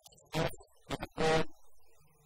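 A man's voice speaking into a lectern microphone: two short spoken phrases.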